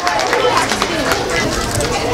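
An audience clapping with scattered hand claps, mixed with crowd voices and chatter.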